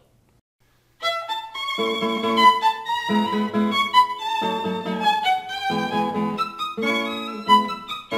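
Violin playing a melody that begins about a second in, with lower notes sounding repeatedly beneath it.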